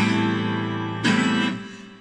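Twelve-string acoustic guitar strummed twice, one chord at the start and another about a second in, each left to ring and fade: the closing chords of a song.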